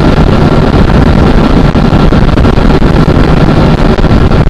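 Motorcycle engine running hard at a steady high speed of about 133 km/h, with heavy wind rush on the microphone.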